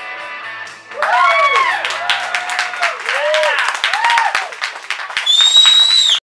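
A sustained chord rings out and fades in the first second, then the audience breaks into clapping with whoops and cheers. A loud, high whistle cuts through near the end.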